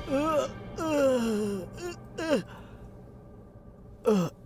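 Strained vocal groans and moans, with one long falling moan about a second in and short cries around two seconds, over faint background music.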